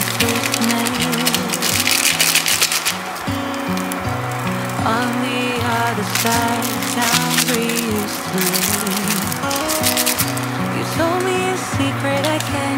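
Background pop music with bass and melody, no singing. Over it, noodles sizzle in a frying pan in irregular bursts, loudest in the first three seconds and again around six to eight seconds in.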